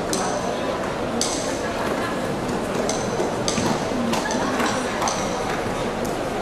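Many voices in a large hall, a steady crowd murmur with calls and shouts, and short high squeaks breaking through several times.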